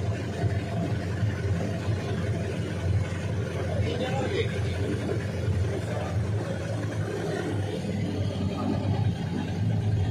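Motorboat engine running steadily with a low hum, water rushing and splashing along the hull as the boat moves through floodwater.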